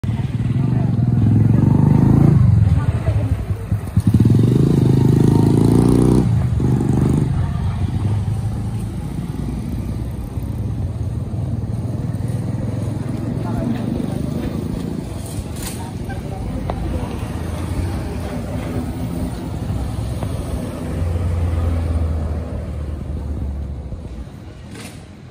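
A motor vehicle engine running close by, loudest with shifting pitch for the first seven seconds, then a steadier, lower hum, along with voices.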